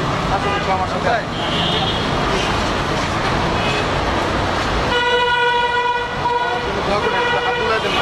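A vehicle horn sounds one held blast about five seconds in, then sounds again more faintly until near the end, over steady road traffic noise and the chatter of a street crowd.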